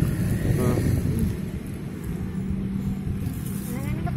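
Low, steady hum of an engine idling nearby, with a short faint voice under a second in.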